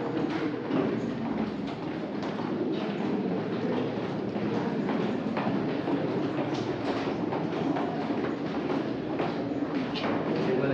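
Footsteps and shuffling of a group of visitors going down a stairwell, many steps overlapping over a steady crowd noise.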